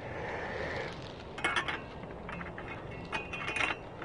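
Light metal clicks and clinks as a slotted BRS-24 heat diffuser is turned and fitted onto the pot supports of an MSR WhisperLite stove, in two short clusters about a second and a half in and again near the end.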